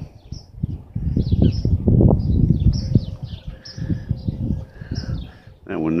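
Small birds chirping in quick, scattered calls over irregular low rumbles and thumps, which are loudest in the first half.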